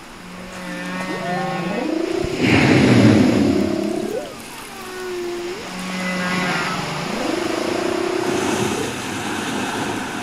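Humpback whale song: a sequence of long low moans, each held steady and then sliding up in pitch, with a loud rough roar about two and a half seconds in and a shorter upward whoop after it.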